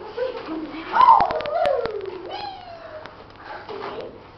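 A girl's voice making drawn-out, wordless calls. One slides from high to low over about a second, then a shorter one rises and holds, with a few sharp clicks in between.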